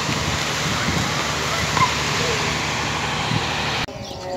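Railway station ambience: a steady rushing noise with a low hum under it and a few faint bird chirps. It cuts off abruptly just before the end.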